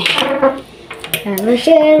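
A few light clinks of a ceramic cake plate against a glass tabletop, with children's voices.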